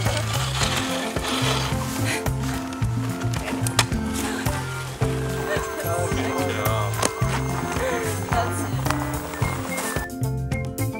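Background music with a repeating bass line and a steady beat.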